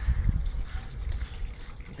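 Leaves of a blackberry bush rustling as a hand pushes in among the canes to take hold of the berries, with low bumps of handling noise on the camera microphone at the start.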